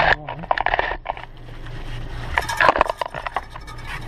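Irregular clicking and scraping of hands and a tool working a waste-pipe fitting under an RV, loosening the holding-tank drain valve connection. It comes in two short spells, one at the start and one just before the end.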